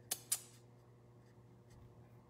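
Two short scratchy strokes of a small paintbrush laying acrylic paint onto a stretched canvas, in the first half-second, followed by faint room tone with a few light ticks.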